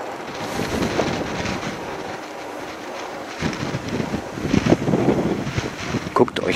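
Wind buffeting the microphone on a moving bicycle, a steady rushing noise that turns louder and gustier about halfway through.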